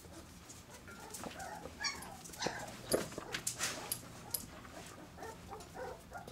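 Labrador retriever puppy whimpering in a few short, high whines, with scattered clicks of claws on a tiled floor.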